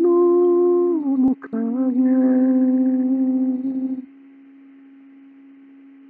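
A man humming with closed lips: a long held note that slides down about a second in, a brief break, then a lower note held steady until about four seconds in. A faint steady tone continues beneath after the humming stops.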